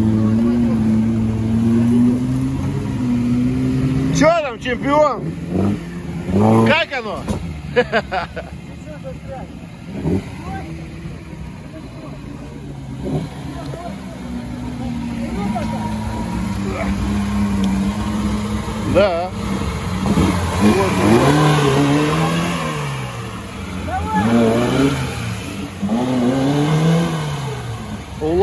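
Lada Niva off-road car's engine revving up and down again and again as it works through deep mud, with voices shouting over it.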